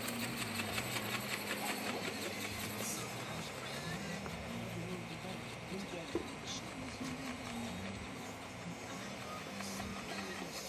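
Whine of the RC ornithopter's small electric motor and wing-flapping gear drive as it flies. The pitch shifts up and down in steps.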